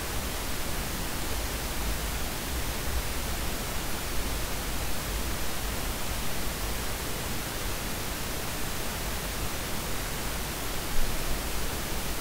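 Steady hiss with a low hum underneath: the background noise of the voice-over microphone recording.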